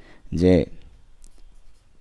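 One short spoken word, then faint scratching of a pen or marker writing on a surface.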